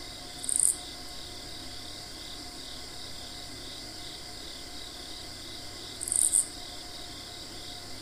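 Crickets chirping in a steady, pulsing background chorus. Two short, sharp high-pitched chirps stand out, one about half a second in and another about six seconds in.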